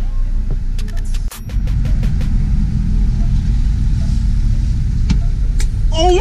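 Low steady rumble of a Hyundai Genesis Coupe's 3.8-litre V6 with aftermarket exhaust, heard from inside the cabin, with a quick run of clicks and knocks about a second in.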